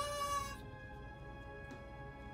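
A single held, even-pitched musical note or sound effect from the variety show's soundtrack, strong for about half a second and then fading to a faint sustained tone.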